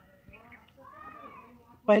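A faint animal call whose pitch rises and then falls over about a second.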